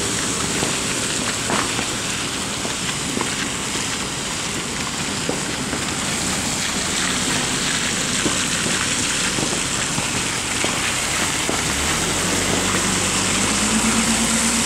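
Steady rain with the even noise of tyres on the wet road as cars pass close by; a vehicle engine hums in near the end as it draws alongside.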